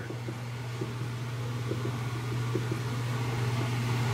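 A steady low hum, with a few faint soft ticks of fingers pressing buttons on a controller's keypad.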